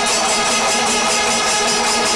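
Kerala temple percussion ensemble playing chenda melam: chenda drums and hand cymbals beating a fast, even rhythm, with kombu horns holding steady notes over it.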